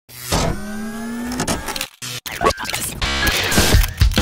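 Music from the channel's logo intro: a rising synth sweep for about a second, a brief drop-out near the middle, then sharp hits and swooshing sweeps.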